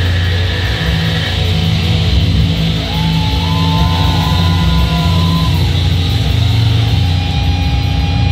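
Heavy metal band playing live, loud, with electric guitar and drums. A few high held notes bend about three to five seconds in.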